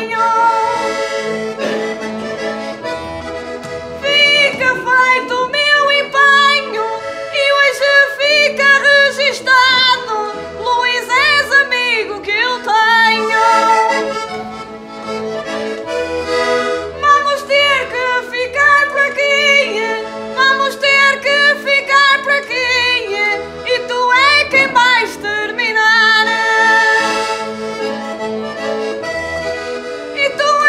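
Portuguese concertina (diatonic button accordion) playing an instrumental passage between sung verses of a desgarrada. An ornamented melody runs over a steady oom-pah bass that alternates between low bass notes and chords.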